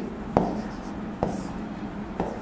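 A pen writing on a board: two sharp taps as the tip meets the surface, about a second apart, with the short rub of a drawn stroke after the second.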